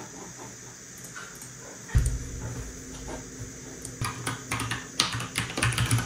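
Typing on a computer keyboard, with a run of quick clicks in the last couple of seconds, over a low steady hum that comes in about two seconds in.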